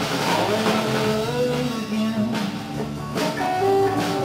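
A live rock band playing: electric guitar and electric bass over a drum kit with cymbal hits.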